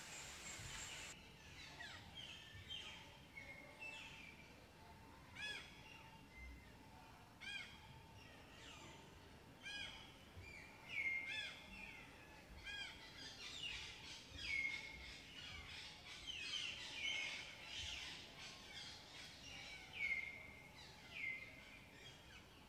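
Wild forest birds calling, several overlapping calls: short arched chirps and a repeated call that drops in pitch, coming thicker and louder in the second half. A hiss in the first second cuts off suddenly.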